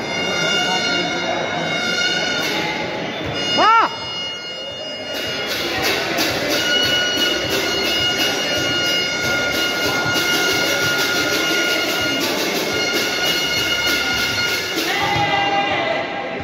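A steady drone of several held, horn-like tones, in the manner of bagpipes, goes on through the free throw. About four seconds in comes a short, loud tone that sweeps up and back down, and from about five seconds a fast, even clatter runs under the drone.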